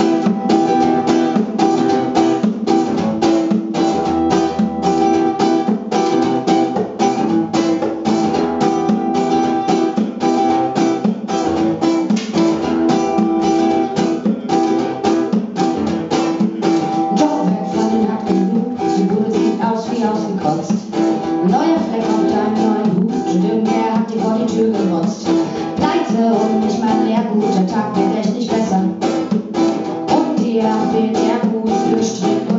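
Two acoustic guitars strummed and picked together in a steady rhythm, with a cajón keeping the beat, played live as a small acoustic band.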